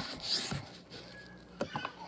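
Kitchen knife slicing through a red onion and striking the cutting board: a sharp chop at the start, a crunchy cut just after, then a few light clicks near the end.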